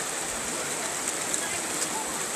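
Steady rushing of the shallow North Fork of the Virgin River flowing over its rocky bed, with a couple of faint splashes from wading.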